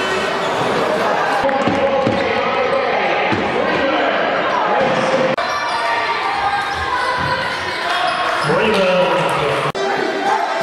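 Live basketball game sound in a large sports hall: a ball bouncing on the court, sneaker squeaks and voices in the hall. It breaks off abruptly twice, about halfway and just before the end, as one clip gives way to the next.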